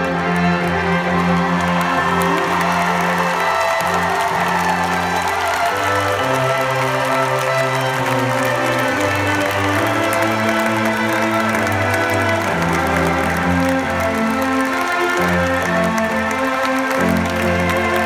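A live band with strings plays a slow instrumental song ending over an arena PA, in long held chords that change every few seconds. An arena crowd applauds and cheers underneath.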